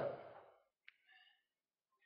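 A man's last spoken syllable trailing off, then a quiet pause with a faint breath and a tiny click about a second in.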